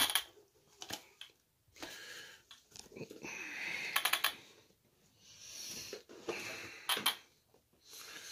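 Handling noise from a plastic-chassis RC monster truck being picked up and turned over: intermittent scraping and rustling with a few sharp clicks, a cluster of them about halfway through and more near the end.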